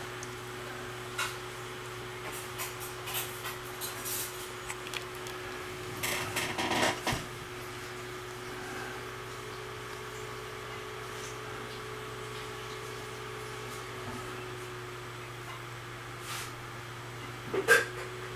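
Goats feeding on hay: soft rustling and scattered crunching clicks, with a louder rustle about six seconds in and again near the end, over a steady low hum.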